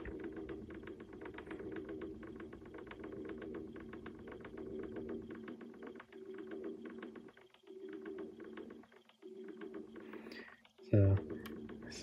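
A small motor hums steadily with a rapid ticking, cutting out briefly a few times in the second half; a short vocal sound comes near the end.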